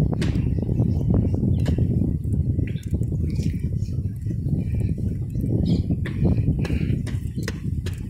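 Footsteps knocking on the planked deck of a suspension footbridge, irregular sharp steps from two walkers, over a steady low rumble of wind on the microphone.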